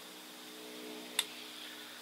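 A single short snip of bonsai scissors cutting through a juniper branch, about a second in.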